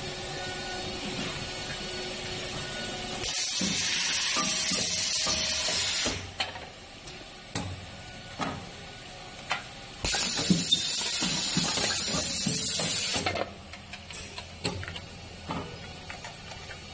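Rotary aluminium-foil tray heat-sealing machine running: a steady hum, then a loud hiss of air lasting about three seconds, twice. Between the hisses come sharp clicks and knocks from the mechanism.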